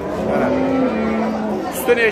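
A calf moos once: a long, steady, low call lasting just over a second.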